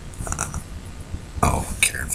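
A short, low, throaty vocal sound from a man starting about one and a half seconds in, over a steady low rumble.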